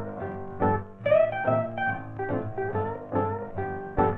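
Instrumental break of an old mono swing-era record: a plucked guitar picks out a run of notes over a steady bass line. The sound is narrow and dull, with no highs.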